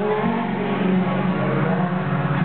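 Live pop ballad played through an arena sound system, with a sustained low note under held chords, recorded from the crowd.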